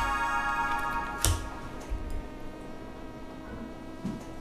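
Musical transition sting: a sustained chord of steady high tones that slowly fades, with a sharp tick about a second in.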